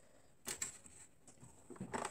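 Hands handling fabric at an overlock machine that is not running, with one short click about half a second in and a few faint ticks near the end.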